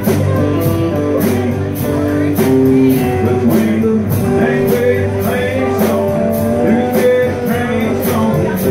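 Live band playing an instrumental passage: strummed acoustic guitar and electric guitar over a bass line and a steady beat of about two strokes a second.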